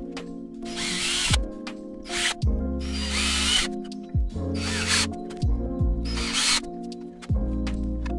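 Cordless drill running in four short bursts, drilling holes into the helmet piece, over backing music with a steady beat.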